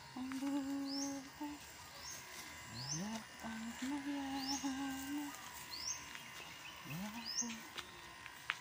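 A person humming a tune in long held notes, some of them sliding up into the note, while a bird chirps short high calls about once a second in the background.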